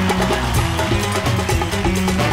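Live band music with a bass line under a steady beat.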